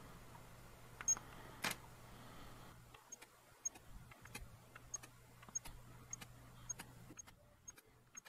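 Faint camera shutter clicks repeating about every half second as the frames of a macro focus stack are shot, with two louder clicks about a second in, over a low hum.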